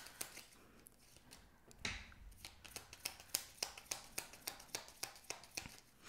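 A deck of tarot cards being shuffled by hand: many faint, quick clicks as the cards slip and snap over one another, with a soft swish about two seconds in.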